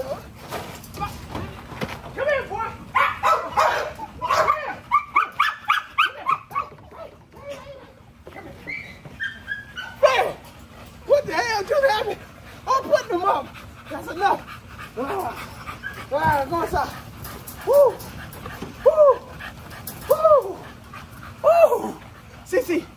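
American Bully puppy yelping and whimpering while being chased and then held, its short high cries coming about once a second over the second half.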